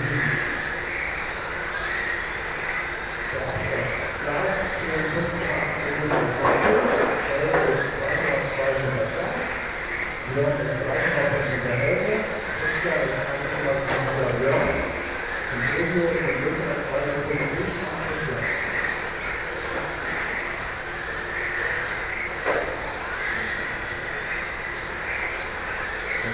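Electric 1/10 RC touring cars with 17.5-turn brushless motors racing, giving a high whine that rises in pitch again and again as the cars accelerate out of the corners, over the steady hum of tyres and hall noise.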